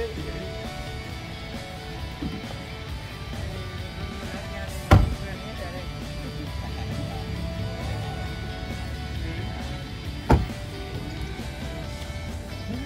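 Background music with guitar over the scene, and a car door shutting with a sharp thud twice, about five seconds in and again about ten seconds in.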